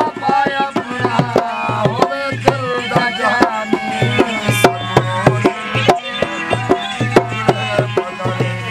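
Live folk music: a man singing over the held drone of a harmonium, with a dhol hand-drummed in a steady rhythm. The voice is heard mostly in the first half, then drum and harmonium carry on.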